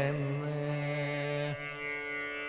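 Carnatic classical music: a single steady held note over the drone, which slides down about one and a half seconds in and leaves the drone sounding alone.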